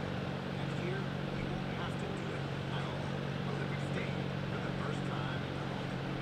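Indoor arena background: a steady low hum with a faint murmur of distant voices.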